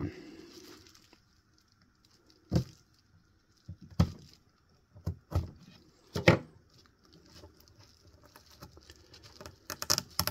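Handling noises from a duct-tape-wrapped ink bottle being turned over in the hand and set down on paper towels: about five separate knocks with quiet between. Near the end comes a quick run of sharper clicks as the tape starts to be picked at.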